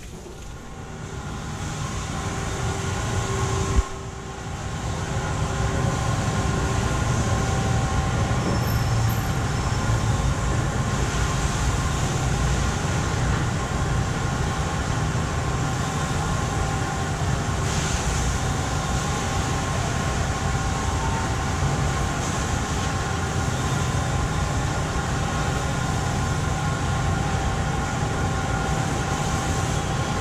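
Steady mechanical drone with several held hum tones, rising in over the first few seconds; a single sharp click about four seconds in.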